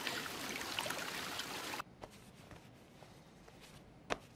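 Jacuzzi jets churning the water, a steady rushing hiss that cuts off suddenly about two seconds in. Faint room tone follows, with a few small clicks.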